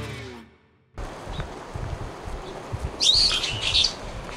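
The tail of the intro music fades out, and after a short silence outdoor background noise begins. A bird chirps loudly for about a second near the end.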